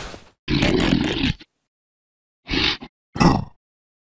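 A cartoon bug character's vocal grunts: four short outbursts with gaps between, the second lasting about a second.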